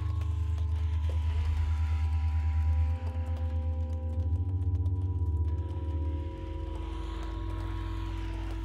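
Alto saxophone holding long, steady notes over a low, pulsing drone, in a slow contemporary piece.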